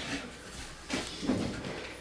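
Handling noise on a tabletop: a sheet of label paper laid down and a pencil picked up, with a single sharp tap about a second in and soft rustling after it.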